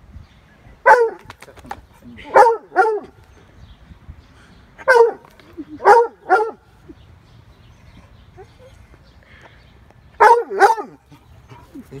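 Redtick coonhound barking at a chipmunk hidden in a gutter: about eight short, loud barks, mostly in pairs, with quiet gaps of a second or more between them.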